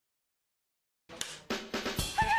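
Silence for about a second, then a drum beat starts: several sharp snare-like hits about a quarter second apart, the opening of background music.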